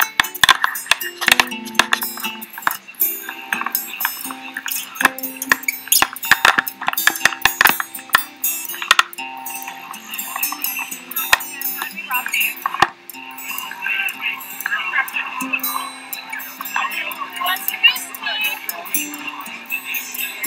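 Voices and music together, with frequent sharp clicks and clinks running through them.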